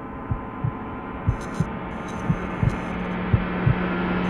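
Film-trailer sound design: a low heartbeat-style double thump about once a second over a drone that swells steadily louder, with a steady low hum tone joining a little past halfway.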